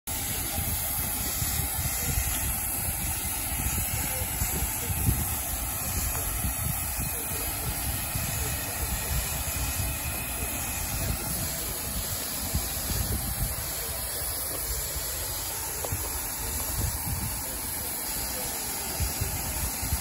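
Rebuilt Bulleid West Country class steam locomotive 34028 Eddystone standing in steam, with a steady hiss of escaping steam throughout. Wind buffets the microphone.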